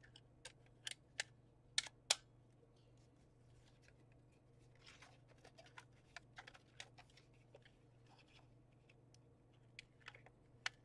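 Paper and cardstock pieces being handled and set down on a craft table: four sharp taps in the first two seconds, then a soft rustle about five seconds in and a run of light ticks.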